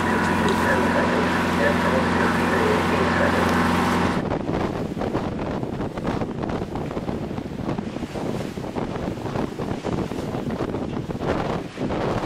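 A boat's engine drones steadily for about four seconds. Then the sound cuts to strong wind buffeting the microphone in gusts, with rushing water, aboard a sailboat sailing in heavy weather.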